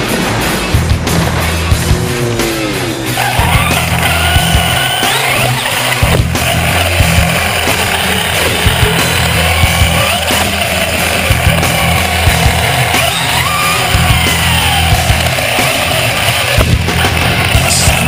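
Music with a heavy, steady beat. Over it, the electric motor of a Traxxas Slash 4x4 RC truck whines, rising and falling in pitch as the truck speeds up and slows around the track.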